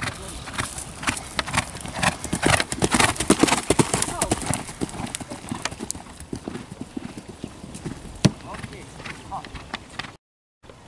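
A ridden horse cantering on grass: hoofbeats that are loudest about three to four seconds in as it passes close, then fade as it moves away. One sharp knock comes near the end.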